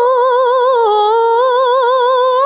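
A woman's solo voice in melodic Qur'an recitation (tilawah), sung through a hand-held microphone. She holds one long unbroken note with quick wavering ornaments, dipping lower in pitch about a second in and climbing back.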